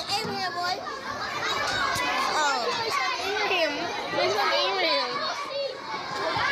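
Loud chatter of many children talking and calling out over one another in a school cafeteria.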